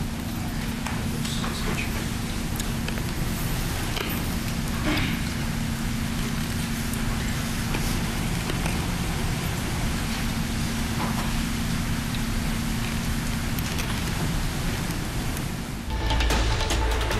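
Room noise from a courtroom microphone feed: a steady hiss with a low electrical hum, broken by a few faint rustles and small knocks.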